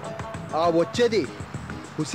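A man speaking briefly over background music, with a short thud about a second in.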